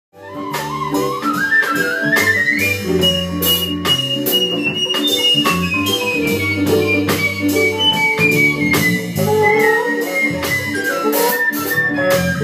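Live small-band improvised jazz: a high woodwind line climbs in pitch and then slowly descends over sustained electronic keyboard chords. Frequent short percussive hits run through it.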